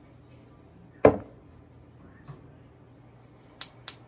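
Gas range burner's spark igniter clicking rapidly, sharp clicks about four a second, starting near the end as the knob is turned to light the burner under the pot. Before that a single spoken word and quiet room.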